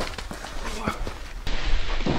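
Two people grappling: scuffling with several sharp knocks and taps and a short vocal sound. The sound changes abruptly about three-quarters of the way through.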